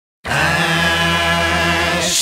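A man's voice moaning one long, drawn-out "ooh" at a steady pitch, starting about a quarter second in.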